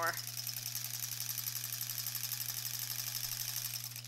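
Electric sewing machine running at a steady speed, stitching a seam through a quilt square with a fast, even patter of needle strokes.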